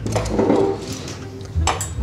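Crockery and cutlery clattering and clinking on a table as plates are set out for serving pasta, with a sharp ringing clink near the end.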